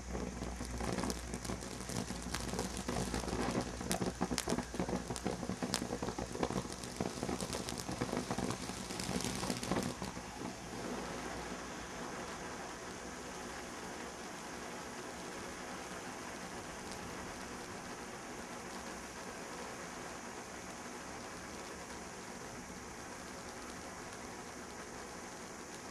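Brothers Pyrotechnics 'Glow Worm Party' fireworks fountain burning: rapid irregular crackling pops for about the first ten seconds, then a steady hiss as it sprays gold sparks.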